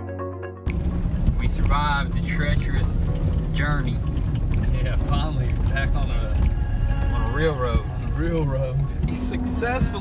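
Steady low road and engine rumble inside a truck cab while driving on a wet road, with voices over it. A short music clip cuts off just under a second in, where the cab sound begins.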